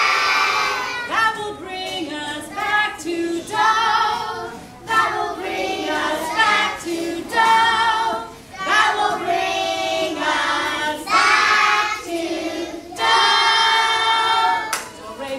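A class of young children singing together in sung phrases with held notes, led by a woman's voice over a microphone.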